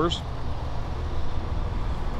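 Onan 5.5 kW gasoline generator on the motorhome running, a steady low hum.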